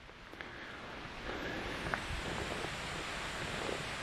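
Steady rushing of a stream swollen by two days of hard rain, fading in over the first second, with a couple of faint ticks.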